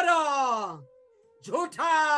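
A man's voice drawing out one long syllable that falls steadily in pitch, then, after a short pause, starting another drawn-out phrase. A bansuri flute plays softly underneath in the pause.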